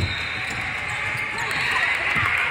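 Basketball being dribbled on a hardwood gym floor, low thumps at the start and again near the end.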